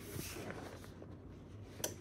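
Sheet of kraft paper rustling softly as it is handled and moved over the heat press, with a small click at the start and another near the end.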